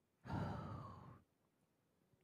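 A person's sigh: one breathy exhale of about a second with a slight falling pitch, starting a quarter-second in and fading away.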